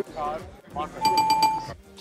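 An electronic bell sound effect rings once, for under a second, about a second in, after a couple of short spoken fragments.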